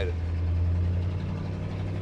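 1968 Ford Bronco's 302 V8 running through glasspack mufflers while driving, heard from inside the cab as a steady low drone.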